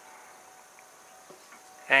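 Faint room tone with a thin steady hum, and one light tap a little after the middle as the pistol's recoil spring and guide rod are set down on a rubber mat.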